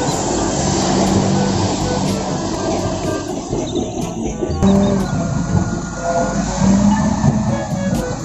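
Caterpillar wheel loader's diesel engine running steadily as the machine carries a bucket of gravel, heard as a dense, continuous machinery noise.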